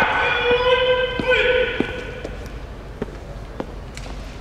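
Sumo referee (gyōji) giving a long, drawn-out call of about a second and a half, held at one pitch, to urge on two wrestlers locked in a stalled grip. A few sharp single clicks follow in the quieter hall.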